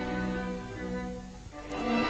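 Orchestral horror film score: bowed strings hold soft, sustained low notes that fade away about three-quarters of the way through, then the strings swell back in fuller near the end.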